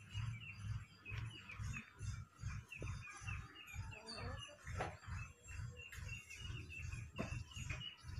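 Small birds chirping, with short calls repeating several times a second. Under them is a faint low thudding at about three beats a second.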